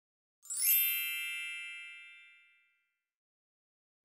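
A single bright, bell-like chime struck about half a second in, ringing with many high tones and fading away over about two seconds.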